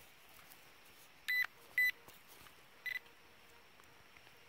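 Handheld metal-detecting pinpointer giving three short, high electronic beeps at one pitch, the second close after the first and the third about a second later, as its tip passes over a metal target in the soil. It is locating a coin.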